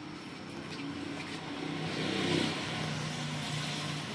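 A motor vehicle's engine hum that swells to a peak a little past halfway and then eases off slightly, with a hiss over it.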